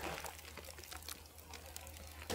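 Faint rustling and crinkling of a plastic tarp and leafy mustard stems as the bundle is lifted and hangs on a handheld hanging scale, over a low steady hum.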